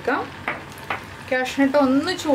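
Cashew nuts frying in hot ghee in a small pan: a steady sizzle with a couple of sharp crackles in the first second. A voice comes in over the sizzle near the end.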